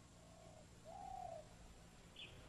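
Faint bird call: two soft cooing notes, a short one and then a longer, arching one, over near silence.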